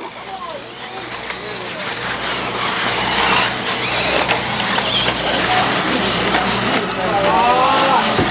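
1/8-scale electric RC buggies racing on a dirt track, a rushing noise of motors, drivetrains and tyres that builds over the first few seconds and then holds steady. A voice comes in near the end.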